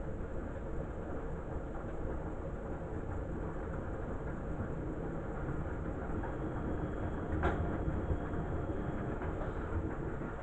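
Beko front-loading washing machine running a wash, its drum turning the laundry with a steady low rumble. There is a single sharp knock about seven and a half seconds in.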